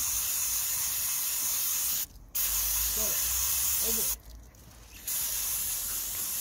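Aerosol can of EGR and carburettor cleaner spraying into a mass airflow sensor: a loud hiss in three long bursts, broken briefly about two seconds in and for about a second near four seconds in.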